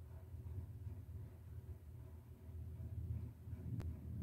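Quiet room tone: a steady low hum, with a single faint click near the end.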